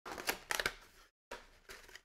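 A cardboard trading-card hobby box and the sealed packs inside it being handled: rustling and rattling with a few sharp taps, in two short bursts, the second starting just after a second in.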